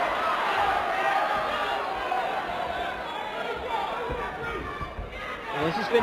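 Fight-night crowd at ringside, a steady hubbub of many voices with scattered shouts.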